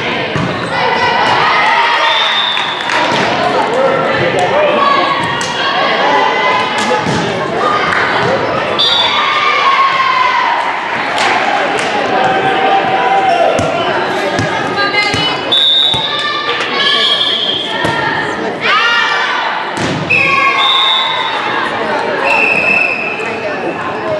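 Girls' voices calling out and chattering over one another in an echoing gym, with a volleyball bouncing and thudding on the hardwood floor at intervals.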